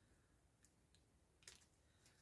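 Near silence, with two faint short snips of small scissors cutting an angle off a piece of cardstock, the second a little louder.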